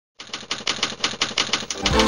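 A rapid, even clatter of sharp clicks, about seven a second, opens a TV news programme's theme. Near the end a low swell rises into the music.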